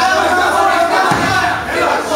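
Ringside crowd shouting and yelling, many voices over one another.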